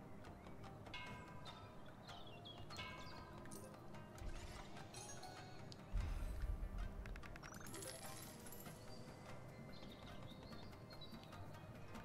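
Faint slot-game music and sound effects from the Ronin Stackways video slot: short chiming tones and clicks as the reels spin and stop, with a low boom about six seconds in as a stacked winning combination lands.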